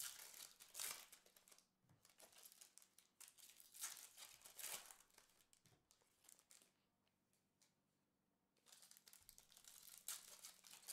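Foil trading-card pack wrappers being torn open and crinkled by hand, faint, in a few short bursts with a quieter pause near the end.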